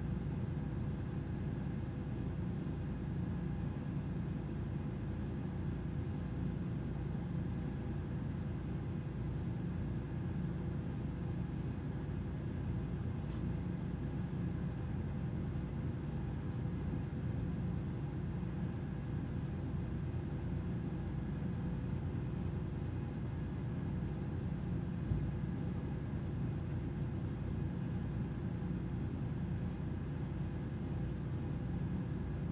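Steady low rumble and hum of a ship's running machinery, with faint constant tones above it.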